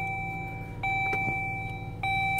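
Dodge Journey's dashboard warning chime: a steady electronic tone held about a second, breaking off and sounding again just under a second in, over a low steady hum.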